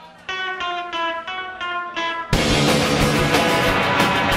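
An electric guitar picks a short run of about six single notes. A little over halfway through, the full band crashes in loud with drums and guitars, starting a garage-punk song.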